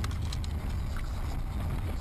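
Steady low rumble of a car's engine and tyres on the road, heard from inside the cabin, with a few faint clicks near the start and about a second in.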